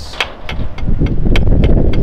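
Drumsticks tapping a rubber practice pad, a string of sharp taps about three a second, with wind rumbling on the microphone underneath.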